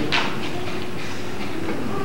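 A brief vocal sound at the very start, then a steady hiss with a faint hum: the background noise of an old video recording of a stage play, heard in a pause in the dialogue.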